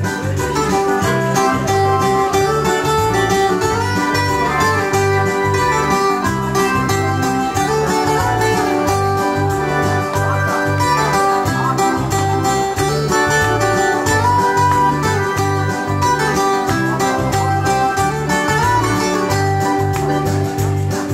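Live folk band music: acoustic guitar with keyboard over a steady bass beat, playing continuously.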